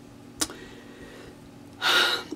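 A woman's sharp, breathy intake of breath near the end, taken just before she speaks, after a single short click about half a second in.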